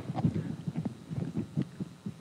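A quick series of soft, irregular knocks and taps that fade away over the two seconds.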